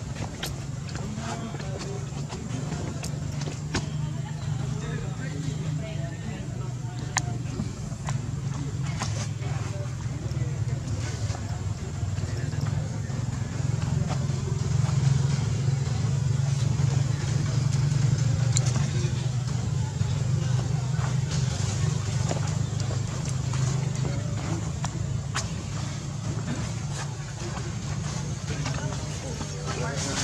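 Steady low hum of a running engine, swelling a little in the middle, with a few faint clicks.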